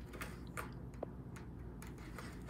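A cat rolling about on a hard floor beside a cardboard scratcher: a few faint, scattered clicks and rustles, with one slightly sharper click about halfway through.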